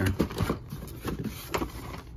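A hand rummaging in a cardboard box of carded die-cast toy cars: cardboard and packaging scrape and knock several times in the first half second and once more about a second and a half in, over a low steady hum.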